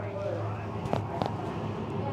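Steady low hum with indistinct voices in the background, and two sharp clicks about a second in, a fraction of a second apart.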